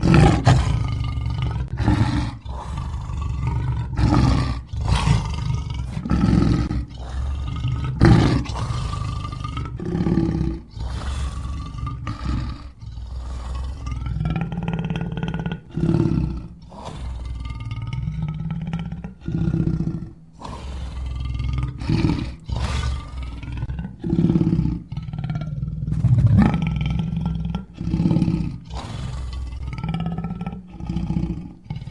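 Custom-made Tyrannosaurus rex sound effect: a string of deep roars and growls, one after another every second or two. Their pitch bends up and down over a steady low rumble.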